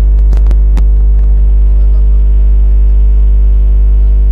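Loud, steady electrical mains hum, a deep buzz with many overtones, with a few sharp clicks in the first second.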